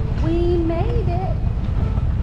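Wind noise on the microphone, a steady low rumble, with indistinct voices heard for about a second near the start.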